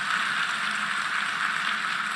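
Hall audience applauding steadily after a campaign promise.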